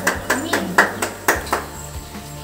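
Several people clapping hands in a quick, steady rhythm, about four claps a second, dying away about a second and a half in, with a few voices under it.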